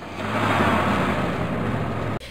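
Truck engine sound effect: a low engine hum under a rush of noise that swells in over the first half second and then holds steady.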